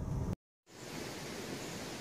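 Car road noise that cuts off after about a third of a second into a moment of dead silence, followed by a steady, even hiss of outdoor background noise.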